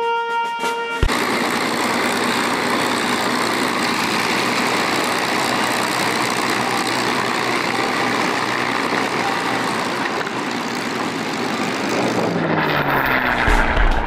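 Brass-like music cuts off about a second in, giving way to the steady drone of a P-51 Mustang's Merlin V-12 engine and propeller. Near the end the engine sound swells and drops in pitch as the Mustang makes a fast low pass.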